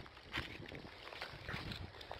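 Footsteps and rustling through long dry grass and weeds: a few soft, scattered brushing sounds.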